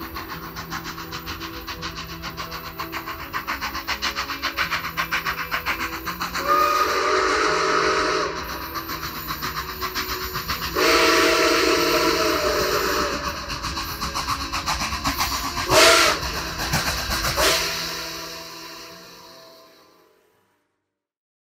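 Steam locomotive chuffing in an even rhythm, with several whistle blasts, two of them long, and a fade-out near the end.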